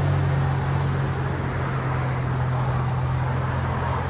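2024 BMW X1 M35i's 2.0-litre turbocharged four-cylinder, muffler removed and in sport mode, running with a steady low drone at low revs as the car pulls away slowly.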